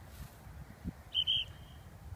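A bird calling: two short high chirps in quick succession just after a second in. Under the calls is a low rumble of wind on the microphone.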